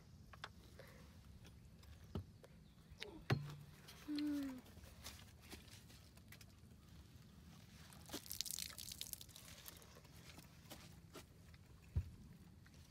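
Mostly quiet, with scattered faint clicks and handling noises and a brief hummed vocal sound about four seconds in.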